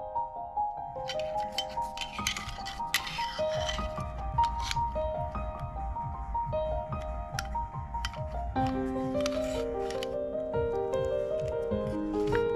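Soft background music of short repeated notes, over scattered clicks and scrapes of airsoft pistol parts being handled and fitted together: an inner barrel and hop-up chamber going into a metal slide.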